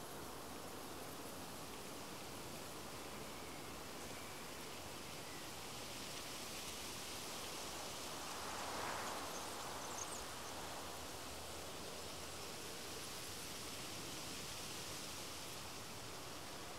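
Faint, steady outdoor ambience under trees: an even hiss of moving air and leaves, swelling briefly about nine seconds in, with a few faint high chirps just before the swell.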